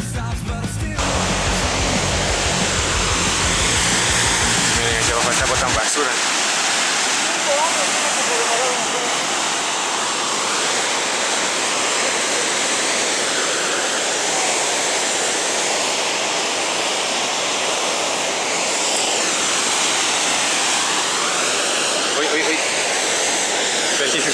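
Steady, loud rushing of a large waterfall plunging into a rocky gorge. Heavy rock music plays over it at first and cuts off about six seconds in.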